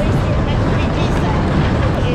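Steady, loud rumble of a fairground ride running at speed, heard from a seat on the ride.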